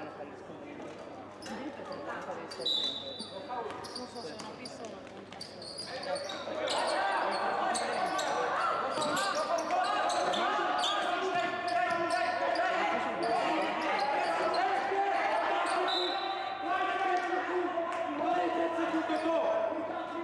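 Live basketball play on a hardwood court: the ball bouncing and players' feet on the floor, with two short high-pitched chirps. From about six seconds in, many voices call and shout over the play, getting louder.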